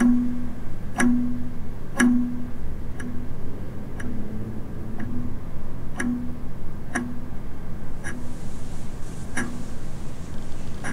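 Ornate mantel clock ticking about once a second, each sharp tick followed by a short low note.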